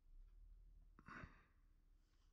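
Near silence with a faint steady low hum, and one brief breath out, like a sigh, about a second in.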